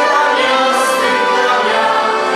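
A small group of young singers singing a Christian hymn together in harmony, with sustained notes, accompanied by accordions.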